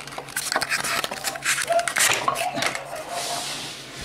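Small hard plastic toy pieces being handled: a string of quick clicks and knocks as the house and its lid are turned over, then a brief rustle near the end.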